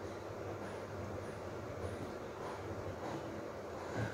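Steady low background noise of the room, a faint even rumble and hiss, with a few faint high ticks about half a second apart in the first half.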